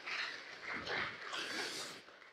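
Faint, indistinct voices from the audience in a lecture hall, heard off-microphone and diffuse, with no clear words.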